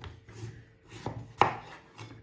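Large kitchen knife slicing through raw butternut squash and knocking on a wooden chopping board. There are a few cuts, the loudest about one and a half seconds in.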